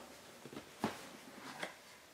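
Cardboard outer box of a Blu-ray box set being handled and slid off the cases: three soft, brief scrapes, the loudest a little under a second in.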